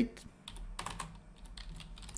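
Typing on a computer keyboard: a quick run of separate key clicks as a word is typed.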